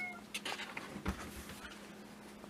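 A cat's meow trailing off at the start, then a few faint soft knocks and rustles of a large comic book's cover being handled and opened.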